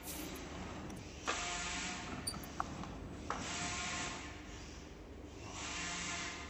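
Bottle cartoning machine being jogged in short runs: its drive and folding mechanism run with a hiss and a faint whine for a second or two at a time, stopping and starting again several times. A short click comes midway.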